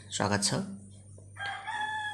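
A single long call at a steady pitch, starting about one and a half seconds in and still sounding at the end. A brief bit of speech comes just before it.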